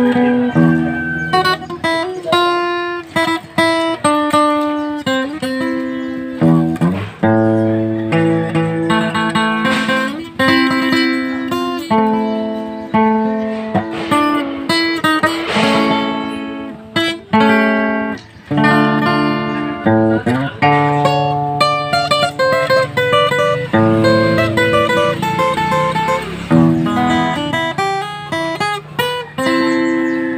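Acoustic guitar played solo, a continuous run of single picked notes and chords with a few brief pauses.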